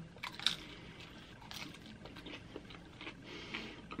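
Faint crunching and chewing as a bite of thin, crisped flatbread-crust BBQ chicken pizza is eaten, with scattered small crackles throughout.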